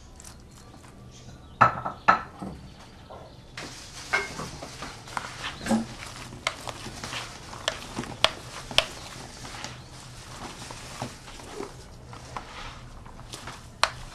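Hands kneading crumbly, freshly moistened cornmeal dough in a plastic bowl: a steady crumbly rustling and squishing with many small clicks and knocks. Two sharp knocks come about two seconds in, before the kneading starts.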